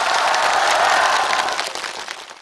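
Studio audience applauding after a song ends, a dense clapping that fades away near the end.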